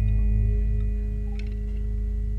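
Javanese gamelan ringing out at the close of a piece: held metallic tones with a deep gong note that wavers slowly, the whole slowly fading.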